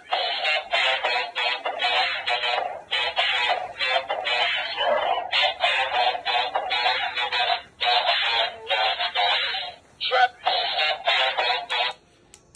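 Plush dancing cactus toy singing a song through its small built-in speaker: a thin, tinny voice with no bass, in phrases with short breaks. It stops near the end.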